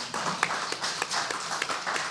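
Audience applauding: many hands clapping at once, steady throughout.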